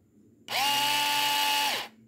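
Motor of a small rechargeable electric garlic chopper spinning its bare blade with the cup off, running unloaded. It starts about half a second in as a steady high whine, runs for about a second and a half, and winds down just before the end.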